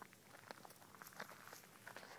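Faint footsteps on a gravel driveway and dry leaves: soft, irregular crackles and scuffs.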